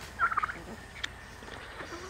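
Ducks giving a short run of soft, quick calls about a quarter of a second in, then quiet.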